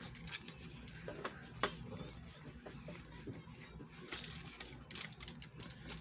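Trading cards being slid and flicked one behind another in the hands: soft papery rustling with scattered light clicks.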